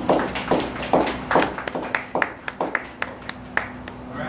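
A small audience clapping, the claps dense at first and then thinning out and dying away.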